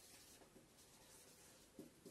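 Faint strokes of a felt-tip marker writing on a whiteboard, barely above near silence.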